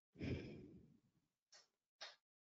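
A person sighing: one breathy exhale lasting about a second, then two short, quick breaths.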